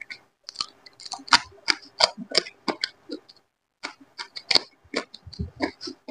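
Close-miked wet chewing and lip-smacking of a person eating rice and curry by hand: a quick, irregular run of sharp mouth clicks and smacks, broken by a short pause a little past halfway.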